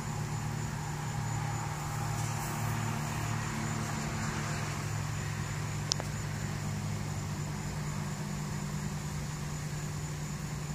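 Steady low hum of an idling vehicle engine, with a single sharp click about six seconds in.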